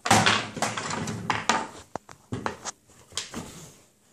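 Plastic step stool being lifted and knocked against a wooden tabletop by a toddler: a run of bumps and scrapes, with a sharp knock about two seconds in.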